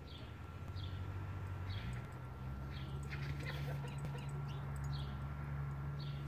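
Faint bird chirping: short, high, downward-sliding chirps roughly once a second over a steady low hum.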